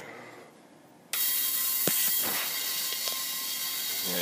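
Small spark-gap Tesla magnifying transmitter switching on about a second in: a sudden, loud, steady buzzing hiss with a few sharp cracks as sparks break out from the top load.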